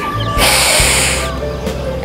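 A woman's deep inhale close to a clip-on microphone: a rushing hiss starting about half a second in and lasting just under a second, over steady background music.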